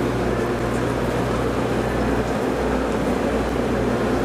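JR Kyushu 783 series electric train at the platform, giving a steady low hum from its onboard equipment.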